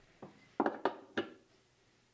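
About four light clinks and knocks in the first second and a half: a steel single-tooth spanner wrench set down on a wooden workbench and the CAT40 drill chuck holder handled in its steel bench fixture.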